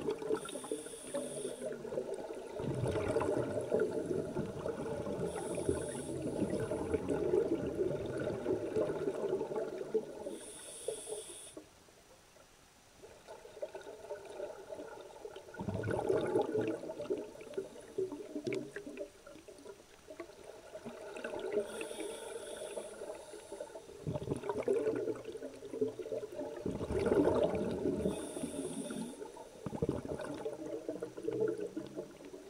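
Scuba divers breathing underwater through demand regulators: short high hisses on each inhalation and long stretches of bubbling as air is exhaled, with a quieter pause about twelve seconds in.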